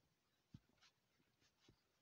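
Near silence with a few faint taps and scratches of a stylus writing on a tablet screen.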